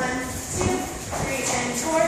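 Dance music with a singer holding long notes, over dancers' shoes shuffling on a wooden floor.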